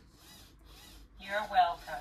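A short voice-like sound with a quickly wavering, warbling pitch, rising in two loud swells from just past a second in. Before it there is only faint room tone.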